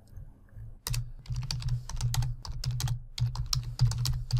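Typing on a computer keyboard: a quick run of keystrokes starting about a second in, as a line of text is entered into a document.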